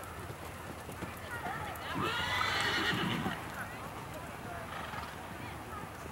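A horse whinnying once, about two seconds in: one loud call of just over a second with a wavering pitch.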